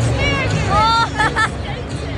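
Stadium crowd hubbub, with a nearby voice calling out loudly in two high-pitched, arching cries within the first second, followed by a short choppy shout.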